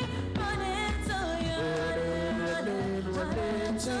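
A woman singing a pop song with long held notes over instrumental accompaniment with a steady bass line.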